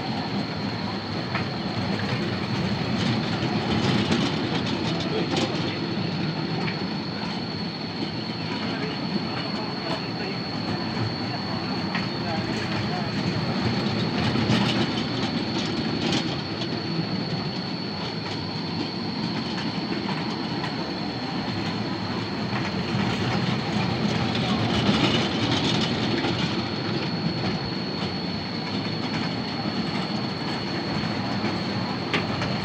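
Children's mini train ride running round a small circular steel track, its wheels clattering on the rails. The sound swells each time the train comes round close, about every ten seconds.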